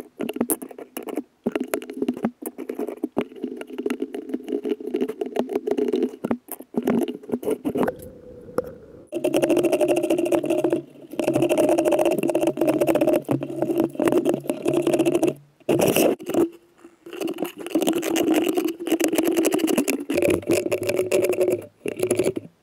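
A small hand carving gouge cuts and scrapes into a wooden relief in quick, short strokes. A louder stretch in the middle has a steady hum under the scraping.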